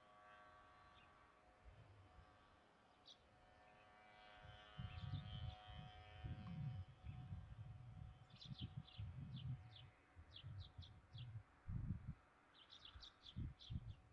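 Faint birds chirping, in quick runs of short high calls a little past the middle and again near the end. Under them come low, irregular rumbles, and in the first half a faint steady hum of several tones.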